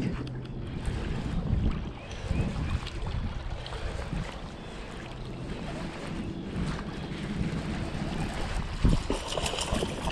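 Wind rushing on the microphone with small waves lapping against a rocky lakeshore, a steady noise throughout.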